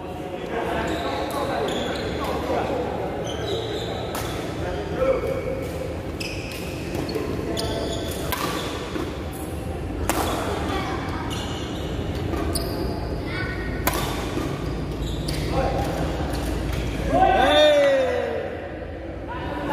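Badminton rackets hitting a shuttlecock in a rally, sharp cracks every second or two, echoing in a large indoor hall with players' voices calling around them.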